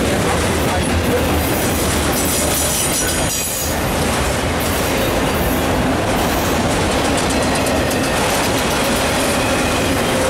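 Freight cars, autoracks and covered hoppers, rolling past close by: a steady loud rumble and clatter of steel wheels on the rails, with a faint wheel squeal at times.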